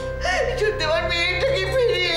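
A woman's voice swooping sharply up and down in pitch in a sing-song, yodel-like delivery, over sustained background music.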